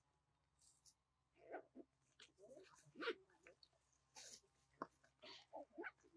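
Faint, scattered short sounds of a macaque eating by hand: brief crinkling and crunching mixed with small soft animal noises at irregular intervals.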